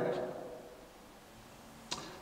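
A pause in a man's speech: the last word fades away in the room's reverberation, leaving faint room tone, then a brief hiss of an 's' as he starts speaking again near the end.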